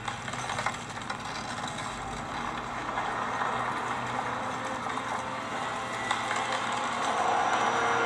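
Sound from the animated episode playing in the video: a steady, rushing noise that swells gradually louder, with a few faint clicks.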